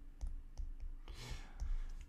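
A stylus writing on a tablet screen: a few light clicks and taps as a word is crossed out and another written, with a brief scratchy hiss about a second in.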